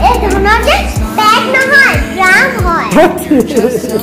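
Children's high voices chattering and calling out excitedly over background music.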